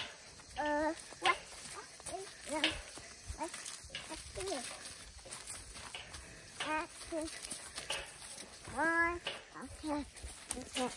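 Several short wordless voice sounds, each bending in pitch, the longest and loudest a rising call near the end, over the crunch and snap of footsteps walking through dry leaf litter.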